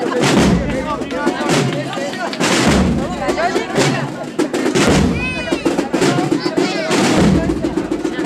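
A processional band marching behind a Holy Week float, its bass drum beating slowly about every two seconds, under the chatter of a street crowd.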